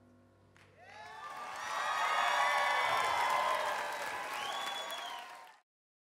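Audience applause and cheering with voices and a whistle, swelling up about a second in as the last note of the song dies away, then cutting off suddenly near the end.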